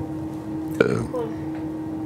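A short, sudden vocal sound from a person, a brief exclamation or laugh, a little under a second in, over a steady background hum.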